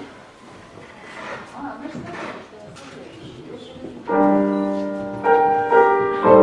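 Faint voices and room murmur, then about four seconds in a grand piano strikes a loud chord that rings and fades, followed by two more chords near the end.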